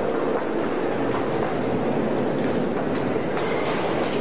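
New York City subway train running through the station, a steady loud rumble with faint clicks in it.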